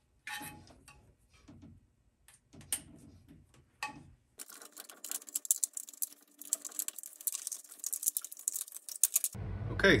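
Hands working cable and black corrugated plastic cable conduit: a few scattered clicks and knocks as a connector is handled, then from about halfway a dense, crackly rustle of the plastic conduit being bent and fed along.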